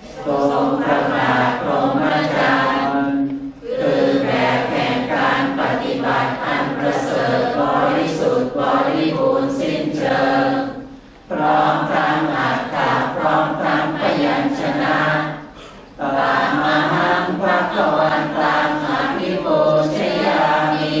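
A group of voices chanting in unison in a Thai Buddhist morning chanting service, reciting a verse in praise of the Buddha on a near-level recitation pitch. The chant breaks for a short breath about 3.5 seconds in, again about 11 seconds in and near 16 seconds, then goes on.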